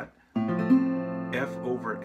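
Metal-bodied resonator guitar strummed on a B-flat chord: after a brief pause the chord starts and rings on, with a voice briefly over it near the end.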